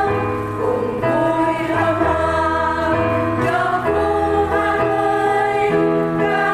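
Choir singing a Catholic hymn over an instrumental accompaniment, with held chords and a bass line that change about once a second.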